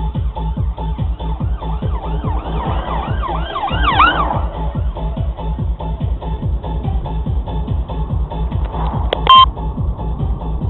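Police siren on a fast yelp, rising and falling about three times a second and swelling to its loudest about four seconds in, over electronic dance music with a steady beat. Near the end a short, loud steady tone with sharp clicks cuts through.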